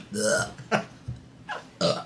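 A woman burping aloud near the start, followed by a few short bursts of embarrassed laughter.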